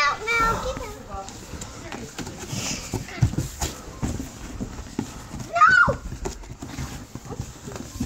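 Young children's voices, squeals and babble, as they play, with scattered knocks and rustles of a cardboard box as they scramble in it. The loudest sound is a high squeal about six seconds in.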